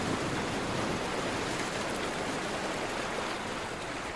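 A steady, even rushing noise like running water or rain, with no other sound over it.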